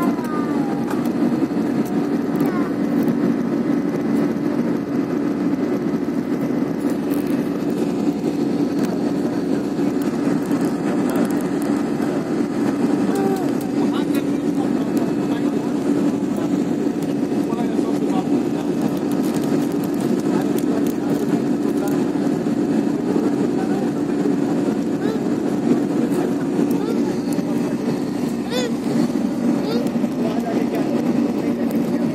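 Jet airliner cabin noise during the climb after takeoff: the steady, loud drone of the turbofan engines and airflow heard from a window seat, with faint passenger voices underneath.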